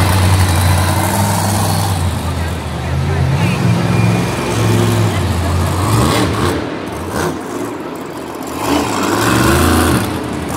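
Dragon monster truck's supercharged V8 engine revving up and down as the truck drives and manoeuvres on the dirt. The pitch rises and falls repeatedly, easing off briefly about three quarters of the way through before climbing again near the end.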